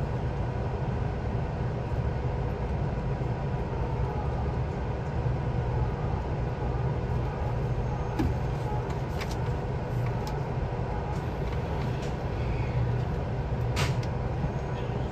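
Steady low hum and rumble inside a JR 383 series express train car standing at a station, with a few faint clicks partway through and a sharper click near the end.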